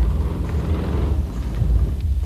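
Car engine running with a heavy low rumble as a convertible pulls away, the engine noise swelling through the middle of the moment.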